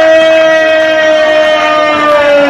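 A man's long drawn-out shout through a microphone and loudspeaker, one steady held note that sags slightly in pitch near the end.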